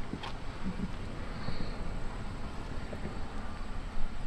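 Low rumble of wind on the microphone with faint handling noise, and one short click about a quarter of a second in.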